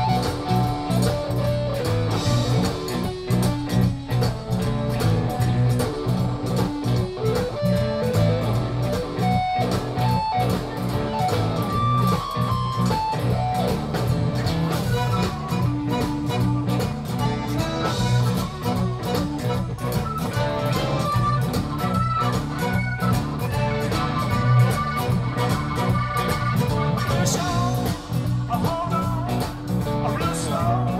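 Zydeco band playing live, with an electric guitar taking the lead over a steady drum beat.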